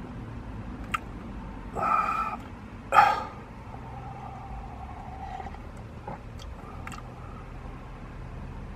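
A man's short wordless vocal sounds, a brief 'mm' around two seconds in and a louder grunt-like sound about three seconds in, while he sips hot chocolate from a paper cup. A faint steady low rumble lies underneath.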